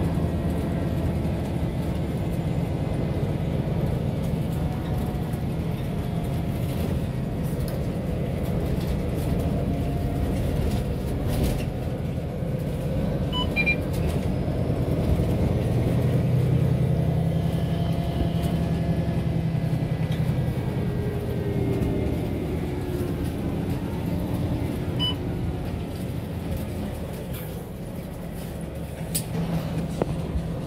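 Inside a MAN A22 city bus on the move: a steady low engine and drivetrain drone mixed with road noise. It swells a little about halfway through and eases off near the end.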